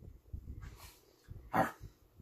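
Dog making low, short noises during play, with one brief, sharper bark-like sound about one and a half seconds in, the loudest moment.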